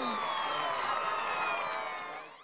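Closing sound effect: several sustained tones slide slowly down in pitch together, fading out near the end.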